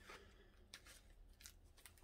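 Near silence: room tone with a few faint, soft clicks.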